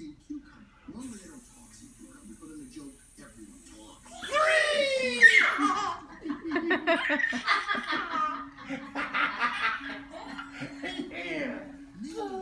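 A toddler squealing with a falling pitch about four seconds in, then giggling in quick bursts, while being lifted high in the air.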